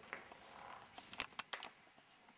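Faint clicks and taps, about five in quick succession in the second half, over quiet room tone.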